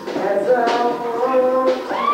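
Live acoustic music: a harmonica played into a microphone, holding chords over a strummed acoustic guitar.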